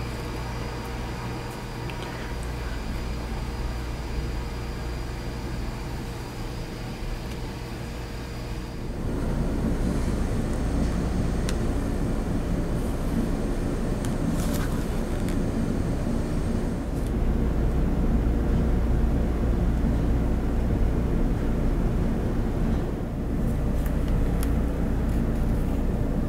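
Steady low rumbling background noise, like a machine or vehicle hum, with no speech. It grows louder about nine seconds in and holds there.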